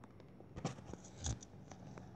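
Faint taps and rubbing of a finger drawing on a tablet touchscreen, with two or three soft clicks in quick succession.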